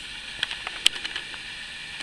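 Camera handling as it is moved and set up: a few light clicks and knocks, the loudest just under a second in, over a steady faint hiss.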